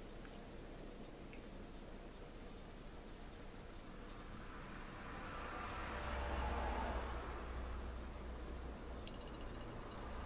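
Faint scraping and rustling of a canvas being tilted and shifted by hand on a plastic tray, swelling a little around the middle.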